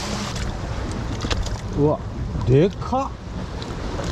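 Wind buffeting the microphone as a steady low rumble, with a few light clicks and knocks in the first couple of seconds.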